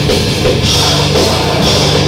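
A grindcore band playing loud and dense, with a drum kit and bursts of cymbal wash coming and going about every half second.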